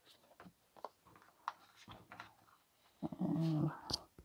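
Tarot cards being shuffled by hand: faint, scattered soft flicks and taps of card stock. About three seconds in comes a louder voiced sound, a hum or whine just under a second long.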